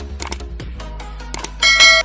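Background music with a few short clicks, then a bright bell-like chime about one and a half seconds in, the loudest sound: sound effects for a subscribe-button click and notification bell.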